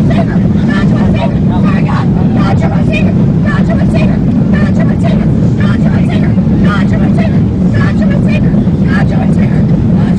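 Airliner cabin noise in flight: a loud, steady low roar. Voices carry on over it throughout.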